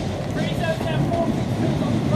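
A pair of coupled Class 377 Electrostar electric multiple units running into the platform close by, a steady rumble of wheels and running gear as the train slows alongside. Faint voices sound briefly under it.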